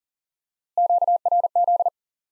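Morse code for QRZ, the ham-radio abbreviation for "who is calling me?", sent at 40 words per minute as a single steady-pitched beep keyed very fast. The three letters come as three quick bursts, starting about three-quarters of a second in.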